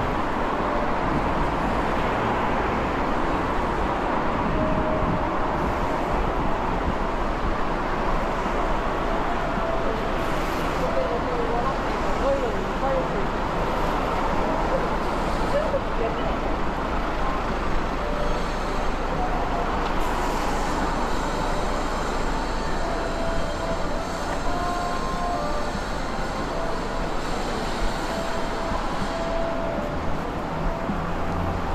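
Steady city street traffic: cars passing on a wet road, with passers-by talking.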